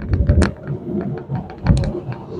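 Golf cart riding along a paved cart path: an uneven low rumble with many small clicks and rattles.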